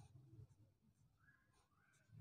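Near silence, with faint scratching of a double pencil (two graphite pencils held together) drawing on paper, a little more in the first half-second.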